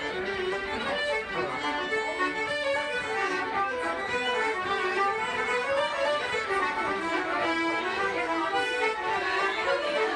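Irish traditional session music: several fiddles, a banjo and an accordion playing a tune together at a steady, unbroken pace.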